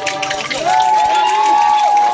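Live folk band in a street crowd: a single note held steady from about half a second in, over a crowd's mixed voices and shouts.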